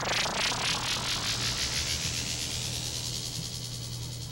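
Electronic synthesizer sweep closing out a logo intro: a fast-pulsing hiss that falls in pitch and fades away over a low steady hum.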